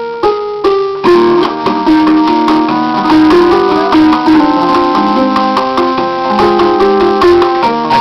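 Portable electronic keyboard playing a tune, with several notes sounding together and changing in steps.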